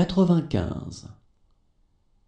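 A voice reading a number aloud in French, the end of a spoken number, stopping about a second in, then faint room tone.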